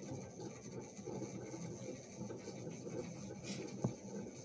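Faint rustling and rubbing of hands tying a knot in a cord necklace, with one short click near the end.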